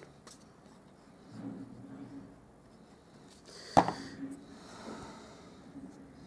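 Faint squelching and hissing of a squeeze bottle of liquid PVA glue being squeezed onto a paper strip, with one sharp knock a little past the middle.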